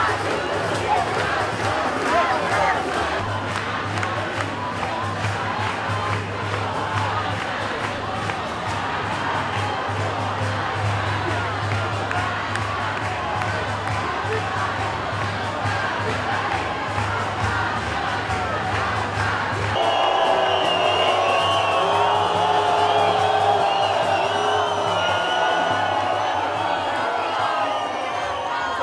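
A large protest crowd shouting and chanting, over a steady low hum. About two-thirds of the way through the sound changes abruptly to clearer voices chanting together.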